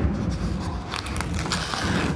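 Opaque protective release paper being handled and peeled back from a diamond painting canvas's adhesive surface, a continuous papery rustle and scrape.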